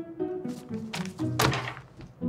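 Three thuds against a desk, the loudest about a second and a half in, over background music with plucked and bowed strings.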